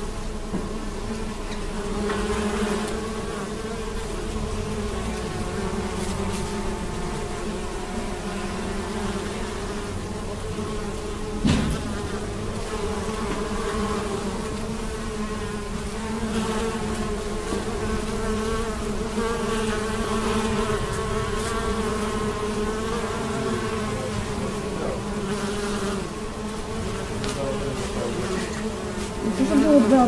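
A swarm of honeybees buzzing as they forage: a steady, slightly wavering hum of many wingbeats, with one brief knock about a third of the way in.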